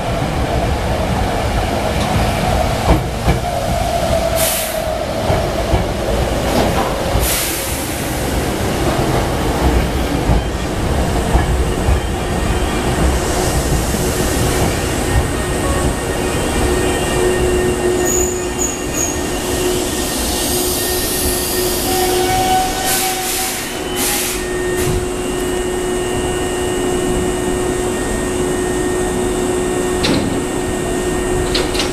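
Hankyu 6000 series three-car electric train pulling into the station and braking to a stop: a falling whine as it slows, wheel and brake noise with a few short hisses, then a steady hum once it stands at the platform.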